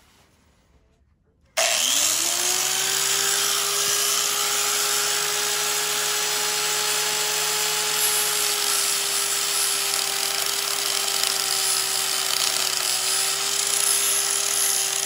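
Electric angle grinder switched on about a second and a half in: its whine rises quickly as the motor spins up, then it runs steadily at full speed.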